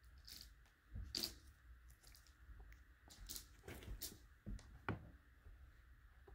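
A quiet room with a few faint, scattered rustles and soft clicks, the most distinct about a second in and again around four to five seconds in.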